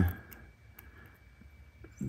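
Quiet room tone with a few faint, light ticks from fingertips handling the small plastic receiver and retention wire of a hearing aid.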